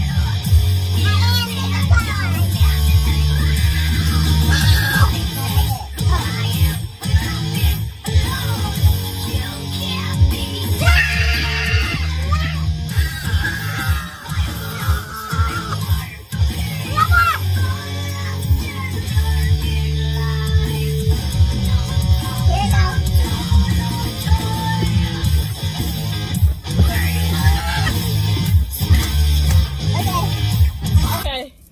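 Loud rock music with electric guitar and heavy drums, played inside a car.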